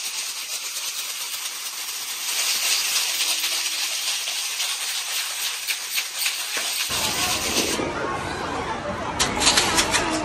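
Many homemade paper-tube shakers shaken hard together: a dense, rattling hiss that swells louder about two seconds in. About seven seconds in it gives way to a different scene with children's voices and sharp clicks.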